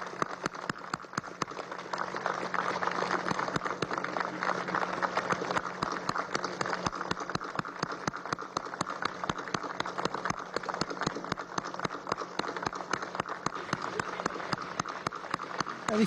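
An audience applauding steadily through a long, unbroken round of clapping, with a faint low hum underneath.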